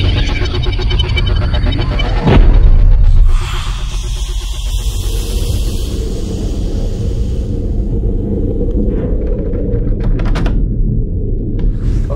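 A steady low rumble with a loud rush of noise about two seconds in, which settles back to the rumble.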